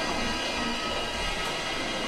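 Marching wind band holding a long sustained chord of many steady high tones.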